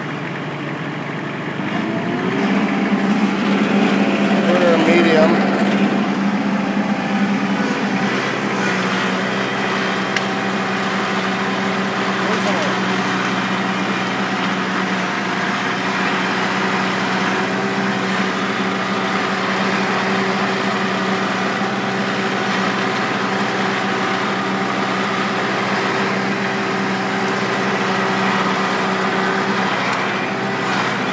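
Kubota L4400 tractor's four-cylinder diesel engine being throttled up about two seconds in, then running steadily at high revs under load. A wavering whine rises and falls around five seconds in, the loudest moment.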